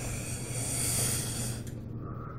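A man breathes out one long hissing breath through his mouth against the burn of ghost pepper salsa. It swells about a second in and fades out just before speech resumes.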